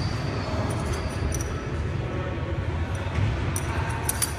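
Steady low hum of a gym's background noise, with a few faint light clicks about a second in and again near the end.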